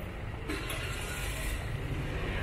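City street ambience: a steady low rumble of traffic, with a burst of hiss starting about half a second in and lasting about a second.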